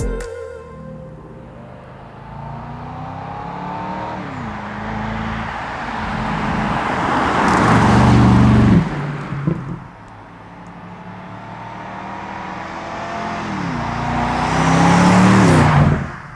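BMW M850i Convertible's 4.4-litre turbo V8 driving past twice. Each time the engine note climbs in loudness and pitch as the car approaches, peaks, then drops away suddenly.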